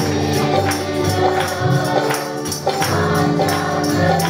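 A mixed group of voices singing a Marathi Christian worship song, with tambourine and hand clapping keeping a steady beat.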